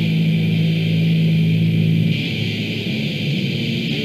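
Lo-fi cassette demo recording of raw death/thrash metal: a low chord held steady for about two seconds, then it breaks off into a rougher, shifting texture.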